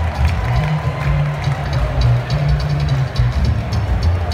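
Blues band playing: a prominent bass line and drums, with a steady ticking of cymbal over the top.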